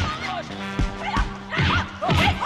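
Film fight soundtrack: action music under a rapid string of short, high-pitched yelps and cries from the fighters, with several punch and hit sound effects.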